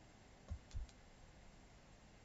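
Two quiet clicks about a quarter of a second apart over faint room hiss: a computer mouse being clicked to advance a presentation slide.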